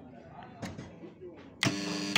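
A short electronic beep from the cooking kettle's control panel, one steady buzzer tone about half a second long near the end, as a panel switch is pressed.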